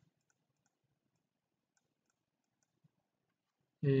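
Faint, scattered computer mouse clicks, a few small ticks spread through an otherwise quiet stretch.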